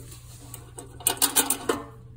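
Light metallic clicks and rattles, clustered about a second in, from handling a steel oil pan with its welded trap-door baffle box.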